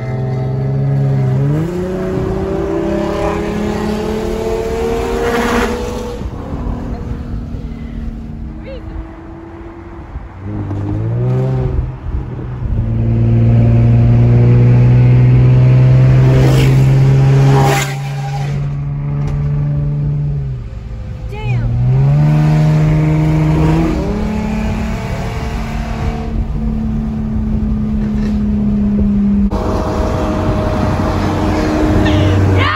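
Lamborghini Aventador V12 with a Gintani exhaust accelerating in repeated pulls, heard from inside a car beside it. The note rises and then holds steady three times and is loudest in the middle, with a few sharp cracks between pulls.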